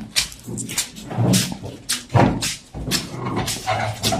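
A woman's animal-like vocal cries, short and low-pitched, among irregular sharp knocks, during a deliverance. The people present take her state for a spirit wanting to come out.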